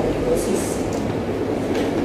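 Steady low hum of background noise in a room between remarks, with a brief hiss about half a second in.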